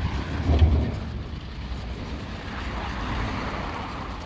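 Outdoor road traffic noise with a low rumble, loudest about half a second in.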